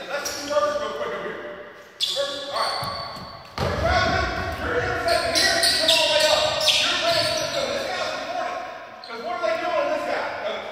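Voices calling out across a basketball court, with a basketball bouncing on the hardwood floor, all echoing in a large gym.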